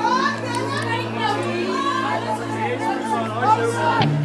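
Background music: a steady low note and held chords with wavering, voice-like sounds laid over them.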